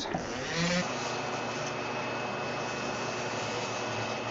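Flexible-shaft rotary tool running an 80-grit flap wheel, sanding carved Monterey cypress to smooth out tool marks. It settles within the first second into a steady, thin high whine over the hiss of the abrasive on the wood.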